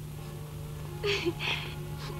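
A woman sobbing: two short, catching sobbed breaths about a second in, over soft, sustained background music and a steady low hum.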